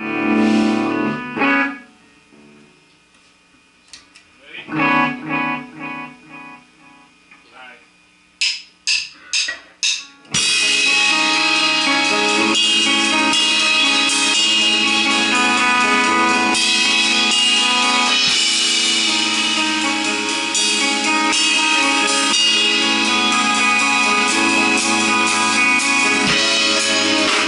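A rock band warming up: an electric guitar chord rings out, a few more guitar notes follow, then four evenly spaced sharp clicks count in. About ten seconds in, drum kit, electric guitars and bass start together and play loudly without a break.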